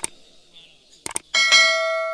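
Subscribe-button sound effect: mouse clicks at the start and again about a second in, then a notification bell chime of several steady tones that rings and slowly fades.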